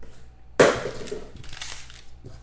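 Trading-card packaging being handled: a sudden crunch about half a second in, trailing off into crinkling.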